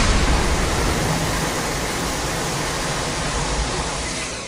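Cartoon energy-beam sound effect for Godzilla's atomic breath: a loud, steady rushing hiss that holds level throughout.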